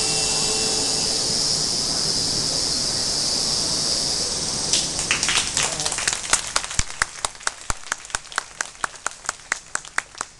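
Audience applause, a dense crowd clapping for about the first five seconds, then thinning out until mostly one pair of hands close by is clapping steadily, about three claps a second.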